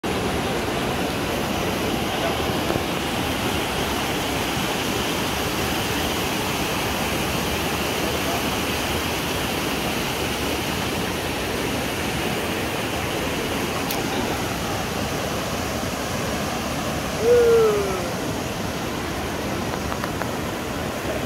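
Shallow river rushing steadily over rocks and small cascades. About three seconds before the end, a short falling call rises briefly above the water and is the loudest moment.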